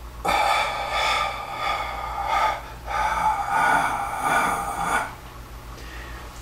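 A man breathing deeply and audibly in a slow costodiaphragmatic breathing exercise: two long breaths of about two seconds each, with a brief break between, stopping about five seconds in.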